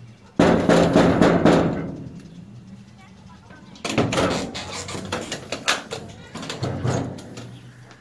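Door sound effects for a radio drama: a loud burst of knocking and door handling about half a second in, then quieter knocks and rattles around four and seven seconds in.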